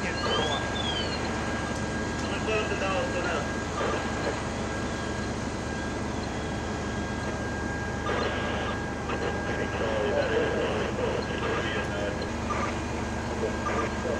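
Fire trucks running at the scene: a steady drone of engines with a constant high whine over it. A short siren wail rises and falls near the start, and voices break in a few times.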